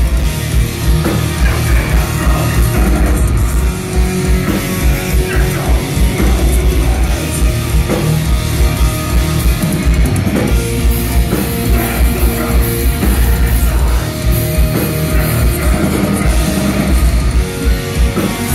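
Black metal band playing live and loud: distorted guitars over rapid, relentless kick drumming.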